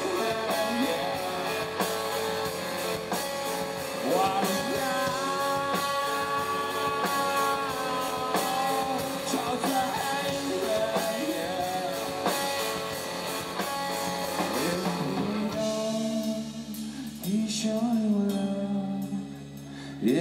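Rock band playing live: electric guitar over drums and bass, with sustained lead notes that bend in pitch. About three-quarters of the way through, the drums and bass drop out, leaving a quieter, sparser guitar passage.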